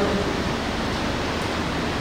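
Steady, even hiss of background noise in the pause between a man's phrases, with no distinct event.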